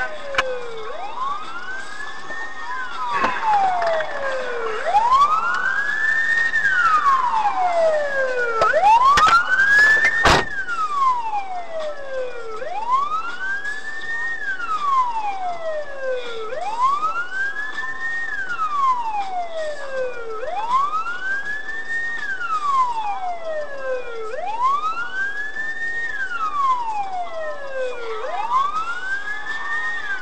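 Police car siren wailing, its pitch rising and falling slowly in a cycle of about four seconds, with a sharp knock about ten seconds in.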